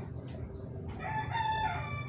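A rooster crowing once: a long, pitched call that starts about a second in.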